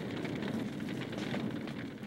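Wood fire crackling, a dense run of small pops and hiss that fades out near the end.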